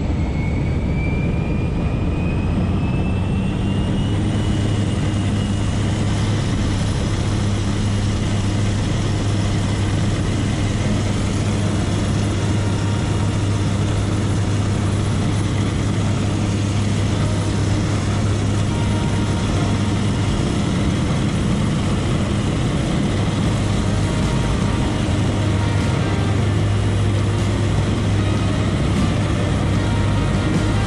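Floatplane's propeller engine running steadily, heard from inside the cabin as a loud, even drone. A thin whine rises in pitch over the first four seconds or so, then holds.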